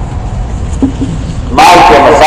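A man preaching in Hindi/Urdu: a pause filled with low rumbling background noise, then his voice comes back loud about a second and a half in.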